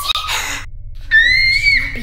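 A girl's voice screaming: a breathy shriek at the start, then a high, held scream for under a second.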